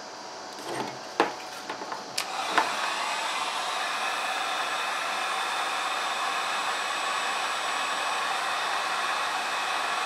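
A few handling clicks and knocks, then a handheld electric heat gun runs steadily from about two and a half seconds in, a rush of blown air with a faint fan whine, aimed at freshly spliced wires.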